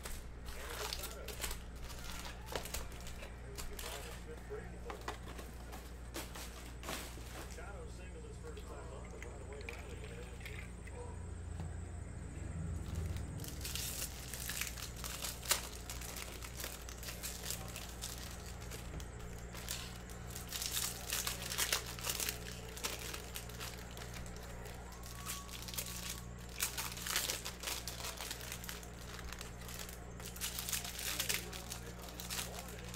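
Foil trading-card pack wrappers crinkling and tearing as packs are handled and ripped open, with many short crackles throughout, busiest in the second half, over a steady low electrical hum.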